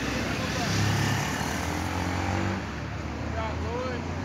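Low, steady drone of diesel locomotive engines running out of sight, swelling about a second in and easing after two and a half seconds, with short high bird chirps over it.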